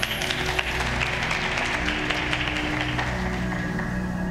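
Audience applauding over sustained stage music; the clapping starts suddenly and dies away about three seconds in, leaving the music.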